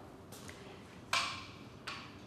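Chalk being handled at a blackboard: a short scrape or knock about a second in, then a lighter click near the end, in a quiet room.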